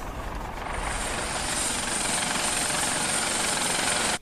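Steady rushing engine noise with a faint high whine above it, growing slightly louder over the first couple of seconds and then holding.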